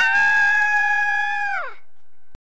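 A single high-pitched voiced cry, held on one steady note for about a second and a half, then sliding down in pitch as it ends.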